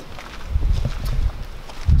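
Footsteps on grass with a low rumble of wind on the microphone, loudest from about half a second in until speech resumes.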